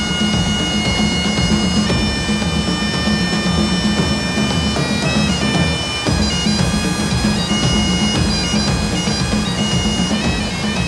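Highland bagpipes playing a tune over their steady drones, long held notes giving way to quicker note changes about halfway through, with a pulsing drum beat underneath.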